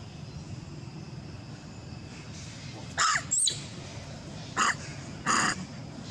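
A crow cawing: three short, harsh caws in the second half, each under half a second, over a steady low outdoor background.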